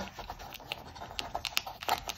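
Folded newspaper strip crinkling as it is rolled by hand into a coil: a run of small irregular paper ticks and rustles, with a louder one near the end.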